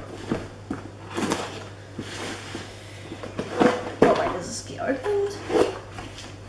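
A cardboard box being opened by hand: the lid and flaps scrape, rustle and knock in short irregular bursts, with a few sharper knocks about two-thirds of the way in.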